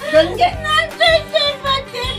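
A woman's voice singing in a wavering, yodel-like way over background music with a steady beat.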